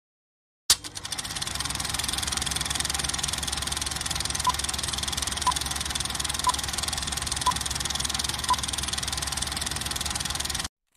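Film projector running: a sharp click as it starts, then a steady, rapid mechanical clatter. Over it, five short beeps one second apart count down a film leader.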